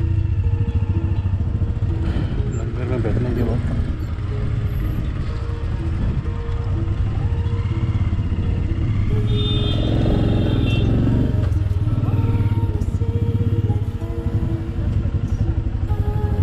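Royal Enfield Meteor 350 single-cylinder engine running at low revs with a steady low thump as the bike rolls slowly, with voices around it.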